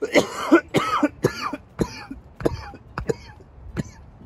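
A man's coughing fit: a string of about a dozen harsh coughs, loudest in the first second and then weaker and more spaced out.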